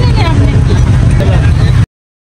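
People talking over a loud, steady low rumble, all cut off abruptly just before the end.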